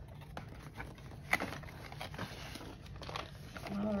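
Plastic packaging being handled: light crinkling and rustling with a few soft clicks as a diamond-painting kit is unpacked.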